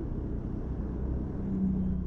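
Street traffic on a busy road: a steady low rumble of vehicle engines and tyres, with a faint steady hum.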